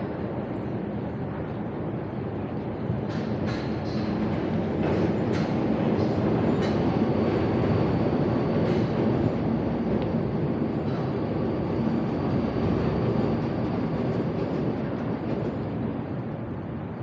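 Rumble of a train crossing the Sydney Harbour Bridge overhead, with faint steady tones; it swells to a peak mid-way and then slowly fades, with a few sharp clicks near the start.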